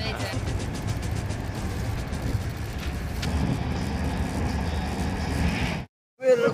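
Steady low rumble with voices in the background, cutting off suddenly to silence just before the end.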